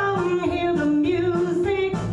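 A woman singing into a microphone, holding and sliding between notes over instrumental backing with a steady bass line.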